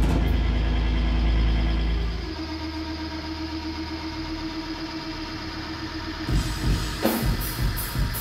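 Hardcore band playing live: a heavy distorted chord rings out, drops to a quieter held guitar note about two seconds in, and the drums and full band crash back in about six seconds in with fast hits.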